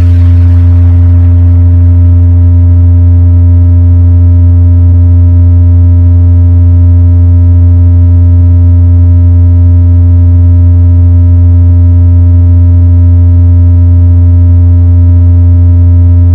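A loud, steady, deep synthesized bass tone held unbroken without any beat, a sub-bass test tone used to check a sound system's bass.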